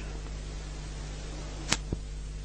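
Steady low electrical hum over faint hiss, with two short sharp clicks near the end, about a quarter second apart.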